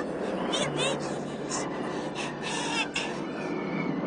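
A cartoon character speaking in a high, squeaky voice.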